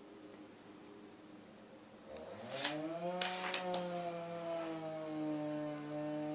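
A power saw cutting wood (railroad ties) starts up about two seconds in. Its motor rises in pitch for about a second, then runs at a steady pitch. A few sharp clicks sound near the middle.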